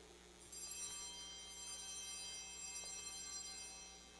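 Altar bells, a cluster of small bells, rung at the elevation of the host during the consecration. The ringing starts about half a second in, goes on for about three seconds with many high tones, and fades near the end.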